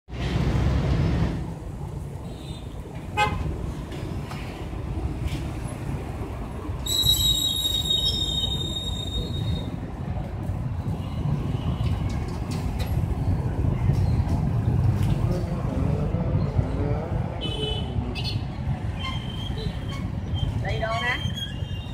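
Street traffic rumble with a vehicle horn sounding for about two and a half seconds around seven seconds in, and a shorter horn beep near the end.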